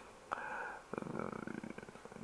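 Faint, rapid clicking of a computer mouse scroll wheel as the view is zoomed in, after a single click about a third of a second in.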